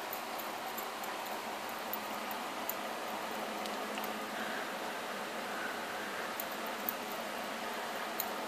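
Steady low hiss of room and microphone noise, with a few faint ticks.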